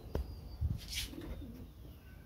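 A bird's low, wavering coo about a second in, preceded by a click, a soft thump and a brief hiss.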